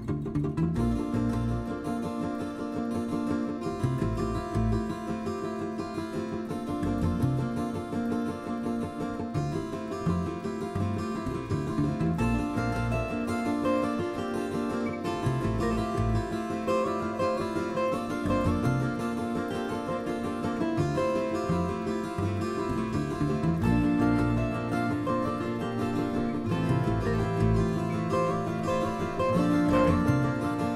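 Instrumental music on plucked acoustic guitars, a steady run of picked notes.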